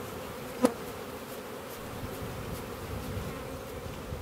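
Honey bees of an open hive buzzing, a steady hum from the mass of workers on and around the frame. One brief sharp click a little over half a second in.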